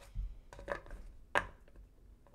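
A deck of tarot cards being shuffled by hand: a few quick, sharp card slaps and taps, the loudest a little over a second in.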